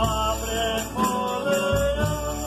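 Folia de reis song: men's voices singing a slow, chant-like line together, with strummed acoustic guitar and a smaller steel-strung guitar under them.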